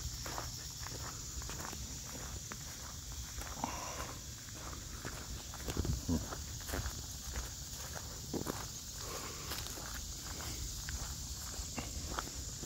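Footsteps walking on a dirt farm track, an uneven run of soft steps, over a steady high-pitched insect chorus.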